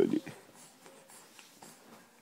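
A short word of adult baby talk at the start, then faint soft rustling of a terry-cloth towel rubbing over a baby's mouth and cheek.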